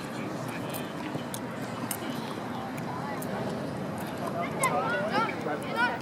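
Youth soccer game ambience: children's and spectators' voices calling out across the field, growing louder in the last couple of seconds, over a steady outdoor background hiss. A few short, sharp taps are heard.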